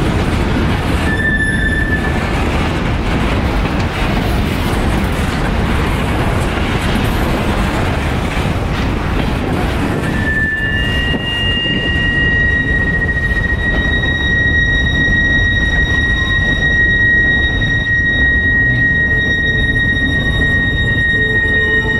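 Freight train boxcars rolling slowly past, with a steady rumble of steel wheels on rail. A brief high squeal comes about a second in, and from about halfway through a steady high wheel squeal holds to the end.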